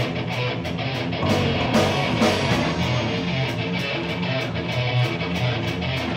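Live rock band playing electric guitar, bass guitar and a drum kit, with a steady, driving drum beat.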